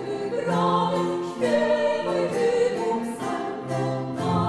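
Early Baroque vocal music from a small early-music ensemble: voices singing held notes in several parts, the notes changing about every half second to a second.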